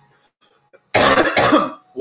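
A man's short burst of harsh coughing about a second in, after an inhaled dab of cannabis concentrate from a glass rig.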